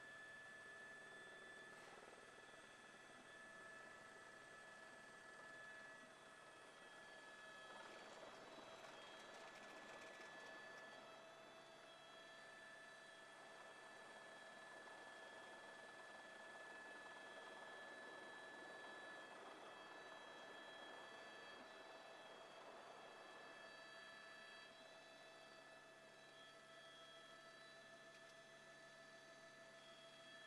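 Near silence: a faint steady hiss with a few faint steady tones under it.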